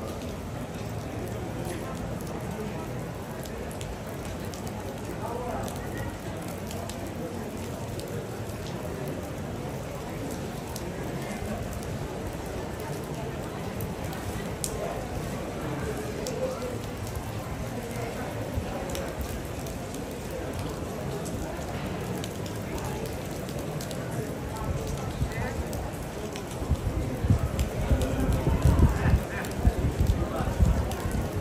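Rain falling on a wet paved square, a steady hiss with light patter, under a faint murmur of distant voices. Near the end, louder low rumbling gusts come in.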